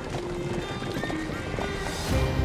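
Hoofbeats of several horses running on snowy ground, with a horse neighing, over music.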